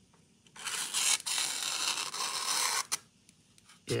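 The edge of a Civivi Spiny Dogfish folding knife slicing through a sheet of thin printed paper: a steady papery rasp lasting about two and a half seconds, starting about half a second in. It is a paper-slicing test of the blade's sharpness.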